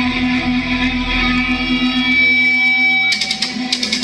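Live rock band playing loud, led by an electric guitar holding sustained notes. About three seconds in, a quick run of sharp hits, drums and cymbals, cuts in over it.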